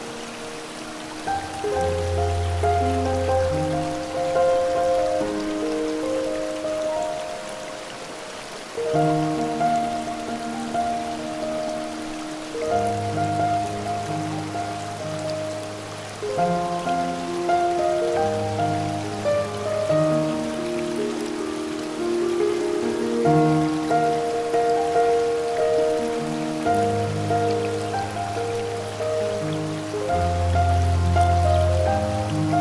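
Slow, gentle piano music, with held melody notes and deep bass notes every few seconds, over a steady wash of waterfall noise.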